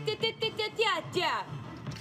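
A woman vocalizing a quick run of short "ta-ta-ta" syllables at a nearly steady pitch, a sung rhythm pattern. A few sliding vocal sweeps come in between, over a low steady hum.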